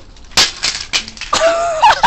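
A plastic VHS cassette breaking on a concrete floor: one sharp crack about half a second in, then a few light clatters of pieces. Near the end comes a loud, high-pitched laughing cry.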